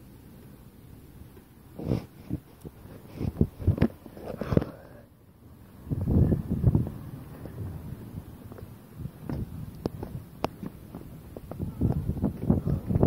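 Handling noise on a phone held close to the microphone: clothing rustling and irregular knocks and thuds as the phone is moved about.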